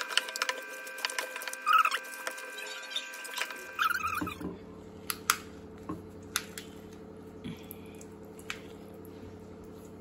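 Wet squelching and patting of a hand kneading chicken pieces in a thick spice marinade in a steel bowl, busiest in the first half, then a few soft taps and scrapes of a wooden spatula in the bowl over a steady low hum.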